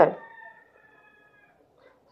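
The tail of a spoken word fading out, then a faint drawn-out tone with several overtones, holding a nearly steady pitch for about a second and a half before it stops.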